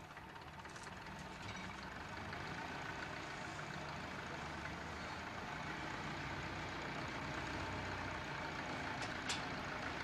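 Hyster forklift truck's engine running steadily, growing gradually louder as the forks lift and tilt a telephone kiosk. A sharp click comes near the end.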